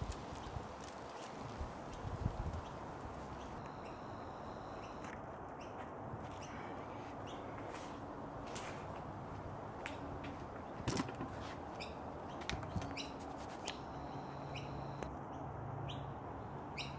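Faint steady outdoor background with scattered light clicks and taps as gloved hands and a knife work garlic cloves into holes cut in a raw lamb carcass; a few louder taps about two seconds in and again around eleven seconds.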